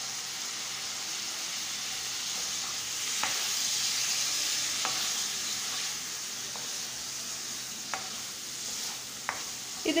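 Paneer cubes frying in a non-stick kadai, a steady sizzle that grows a little louder in the middle. A few light clicks of a spatula against the pan are heard as the paneer is stirred.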